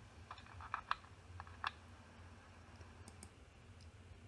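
About six sharp clicks at a computer, bunched in the first two seconds, then a few fainter, higher ticks near the end, over a faint low hum.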